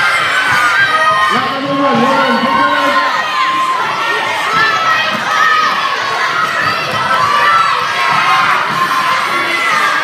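Crowd of schoolchildren shouting and cheering on runners in an indoor sports hall: a steady, loud din of many overlapping young voices with no letup.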